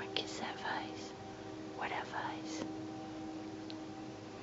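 A distant train horn holds a faint, steady chord of low tones, with two short bursts of soft whispering over it, one at the start and one about two seconds in.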